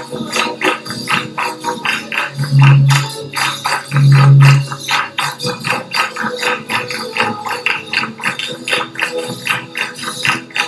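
Live Chilean folk music from a criollo ensemble: strummed guitars and accordion over a quick, steady tambourine beat. Two loud, low held notes stand out a few seconds in.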